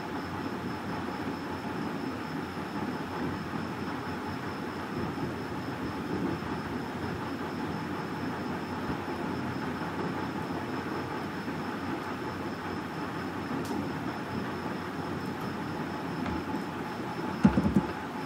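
Steady, even rumbling background noise with no speech, and a few sharp clicks near the end.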